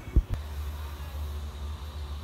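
A single dull, low thump just after the start, followed by a steady low hum of room noise.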